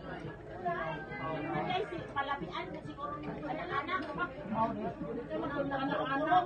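Several people talking at once: indistinct, overlapping conversation among a small group.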